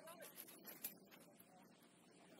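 Near silence: a faint distant voice calls out in the first moments, then a few faint sharp clicks, the sharpest a little under a second in.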